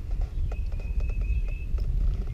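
A run of light, irregular knocks and clicks over a steady low rumble, with a faint thin high tone in the middle.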